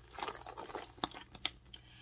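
Handbags and their paper wrapping being handled: an irregular rustling and crinkling, with two sharp clicks about a second and a second and a half in.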